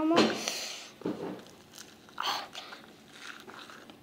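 Sticky slime packed with tiny beads being pulled and squeezed out of its tub by hand: a burst of crackly noise in the first second that fades, then a shorter one about two seconds in.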